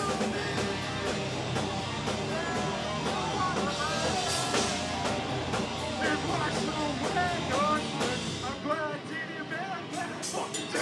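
Live rock band playing: distorted electric guitars over a drum kit, with a bending, wavering high melodic line running over it from about three seconds in.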